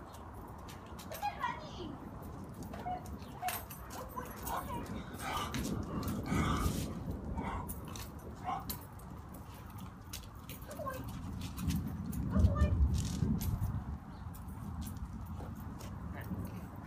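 Indistinct low voices and short dog vocalisations, with a brief low rumble about twelve seconds in.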